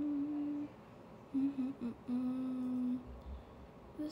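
A woman humming a slow tune with closed lips: a few held notes with short gaps, ending on a lower, longer note.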